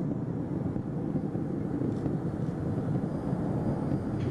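Steady low rumble of Space Shuttle Atlantis's solid rocket boosters and main engines firing during ascent.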